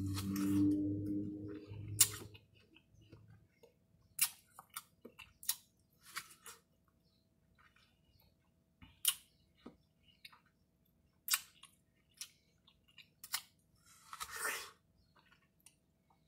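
Close-up chewing and slurping of juicy watermelon: sharp wet mouth clicks and smacks every second or two, with a longer, noisier slurp near the end.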